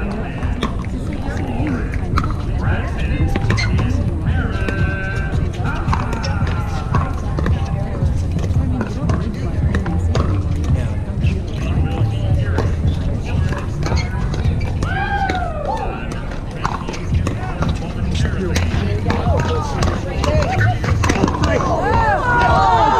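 Pickleball paddles hitting a plastic ball in a doubles rally: sharp pops at irregular intervals, over a continuous bed of background voices and music.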